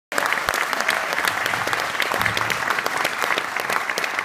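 Audience applauding in a hall: a dense, continuous patter of many people clapping, easing slightly near the end.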